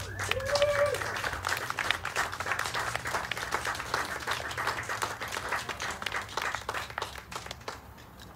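A small audience applauding, the clapping thinning out and fading near the end.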